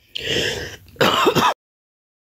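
A woman clearing her throat: a breathy rasp, then a louder voiced, rough clearing about a second in that cuts off suddenly.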